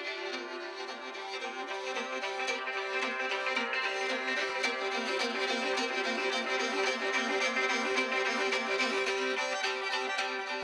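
Morin khuur (Mongolian horsehead fiddle) bowed in a quick repeating figure against a steady held drone note, slowly growing louder.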